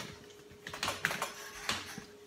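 A paper towel and a cloth rubbing across a whiteboard, erasing it in a run of quick scrubbing strokes.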